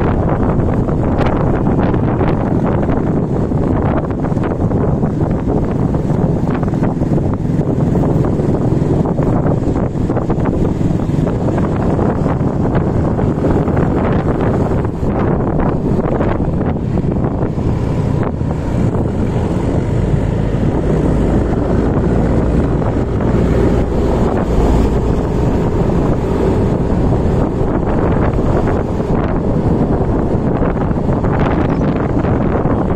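Wind buffeting the microphone of a rider on a moving Yamaha motor scooter, a steady low rush over the scooter's engine and road noise. The low rumble grows heavier for a few seconds past the middle.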